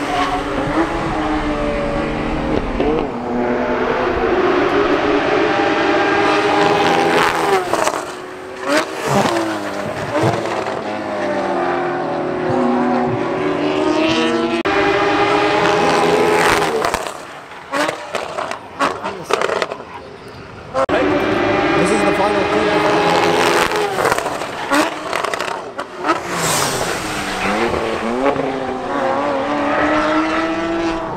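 Porsche Cayman GT4 flat-six engines running hard as the cars lap past one after another. The engine note climbs through the revs, drops at each gearshift and when lifting off, and fades in a quieter lull about seventeen seconds in before the next car arrives.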